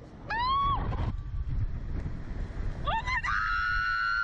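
Women screaming on a Slingshot ride: a short rising shriek near the start, then a long, high, held scream beginning about three seconds in. Between them, wind rumbles on the microphone as the capsule is flung through the air.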